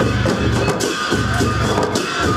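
Festival music: drums beating a steady, repeating rhythm over a deep low pulse, with frequent sharp cymbal-like strikes.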